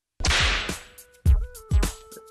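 A sudden whip-crack sound effect from a film soundtrack, fading within half a second. About a second in, music starts: two deep bass thumps under a held note.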